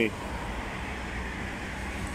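Steady low rumble of street traffic in the background, with no distinct events.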